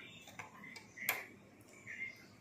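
A few light clicks and taps as rubber bands are stretched and snapped onto the plastic pegs of a rubber-band loom, the sharpest about a second in.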